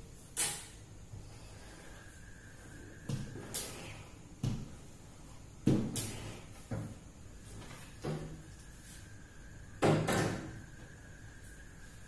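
Screen-printing frame and squeegee being worked on a print table: a series of irregular knocks and clacks as the frame is set down and the squeegee is handled on the screen, loudest twice, about six and ten seconds in.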